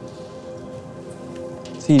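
A steady low hum of several held tones over a faint hiss, with no clear events in it; a voice begins near the end.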